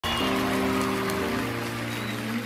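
Live band playing the opening of a song: sustained chords, with one chord change partway through, over a steady haze of audience noise.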